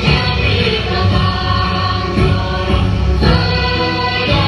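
Music with several voices singing together in long held notes.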